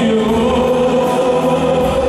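Live rock band playing through a PA in a large hall: electric guitars, bass and drums under held sung notes.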